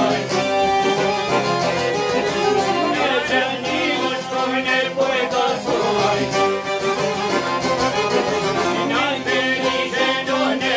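Live Albanian folk music: a man singing with long-necked plucked lutes strumming and a violin playing along.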